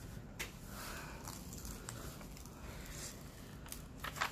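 Faint rustling and crackling of a paper cover sheet being peeled back off the sticky adhesive of a diamond painting canvas, with a small click about half a second in.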